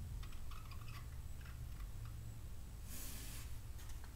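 Quiet room tone with a steady low hum, a few faint clicks in the first second and a short hiss about three seconds in.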